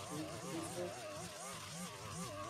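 Gas string trimmer (weed eater) running, its engine pitch wavering up and down a few times a second as the line cuts through tall grass.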